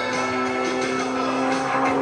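Aerobatic propeller plane's engine droning overhead as a steady pitched drone, growing slightly louder near the end.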